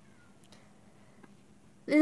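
Near silence with a few faint short high chirps early on, then a girl's voice starts speaking loudly near the end.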